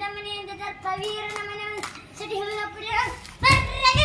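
A child singing in long held notes in the sung style of Kannada bayalu nataka folk drama, growing louder near the end with the voice sliding in pitch.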